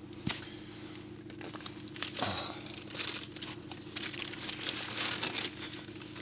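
Paper wrappers crinkling and rustling in irregular bursts as blood sausages are unwrapped by hand, heard inside a car cabin.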